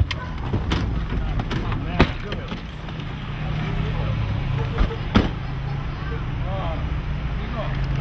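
Police patrol car engine running steadily, with several sharp knocks and clicks over it, the loudest about two and five seconds in. Faint voices come in near the end.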